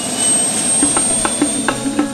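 A steady rushing, jet-like whoosh with a thin high whine, under intro music whose plucked notes come in about a second in and repeat at an even pulse.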